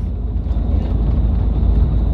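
Steady low rumble of road and engine noise heard from inside the cabin of a moving vehicle travelling along a highway.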